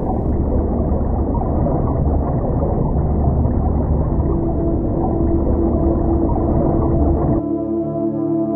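Dense low underwater-style rumble from the film's sound design, with a steady held tone joining about halfway. The rumble cuts off suddenly shortly before the end.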